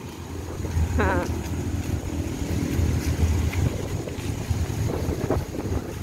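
Steady low rumble of a pet trolley's wheels rolling over wet asphalt, mixed with wind buffeting the microphone. A brief pitched vocal sound comes about a second in.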